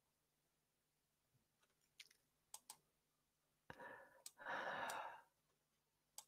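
Near silence broken by several soft computer-mouse clicks, with a quiet breath lasting about a second around four to five seconds in.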